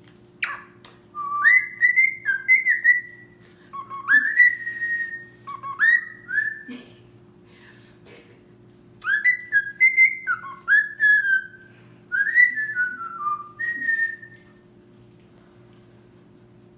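Cockatiel whistling a song it is making up: a string of short whistled phrases that swoop up and slide down, with a pause about halfway through. A steady low hum runs underneath.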